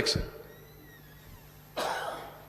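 A man coughs once, briefly, near the end, in a short noisy burst.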